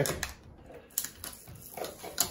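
A few light clicks and taps as hands handle and turn over a UPS battery pack of two sealed lead-acid batteries, fingers working at the label stuck on its back.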